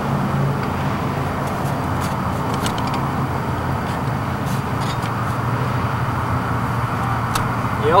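Steady low rumble with a faint hum under it, and a few faint clicks scattered through it.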